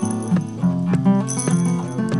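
Instrumental music of quickly picked guitar notes, several a second over a repeating low note pattern, with no singing.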